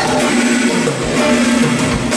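Live band music led by guitar, with no singing.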